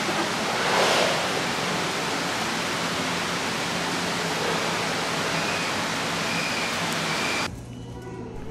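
Steady rush of water in an aquarium penguin pool, swelling briefly about a second in, then dropping off abruptly near the end.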